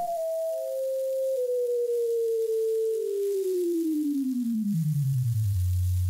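A single pure tone from a frequency generator, played through the speaker driving a sand-covered Chladni plate, falling in pitch in small steps from a high hum to a low hum and then holding steady near the end.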